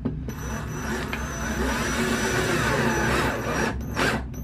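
Cordless drill driving a Torx-head finish screw into a raw cedar floor board. The motor starts a moment in, runs for about three and a half seconds as the screw sinks to just below flush, then stops.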